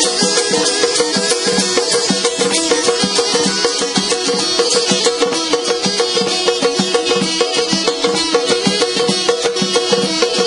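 Azerbaijani ashiq ensemble playing an instrumental passage: a balaban carries the melody over a strummed saz, with nağara drums beating a steady, busy rhythm.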